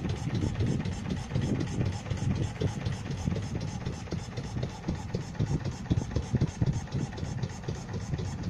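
A 4 HP Marna R1 single-cylinder inboard engine driving a 21-foot wooden boat under way, running steadily with an even, low, rapid beat.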